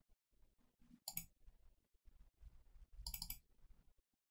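Faint computer mouse clicks: one about a second in and a couple more around three seconds in, over low room noise.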